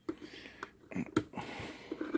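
Multimeter test-probe tips clicking and scraping against the plastic safety shroud of an AC outlet as they are worked into the socket: several light, irregular clicks.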